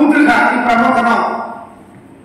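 A man speaking into a handheld microphone, drawing out a long held word that trails off after about a second and a half into a brief pause.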